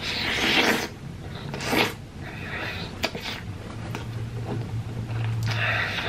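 Eating sounds of a person chewing a big mouthful of naan bread with curry, in a few short wet bursts of chewing and smacking. A low steady hum comes in during the second half, from about three and a half seconds in.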